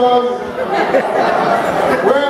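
Crowd chatter: many people talking at once in a large hall.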